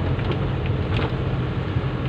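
A car's engine and its tyres on wet asphalt, heard from inside the cabin as a steady low hum with a haze of road noise.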